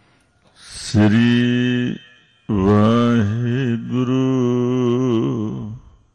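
A man's voice chanting Gurbani in two long drawn-out phrases, the second with a wavering pitch.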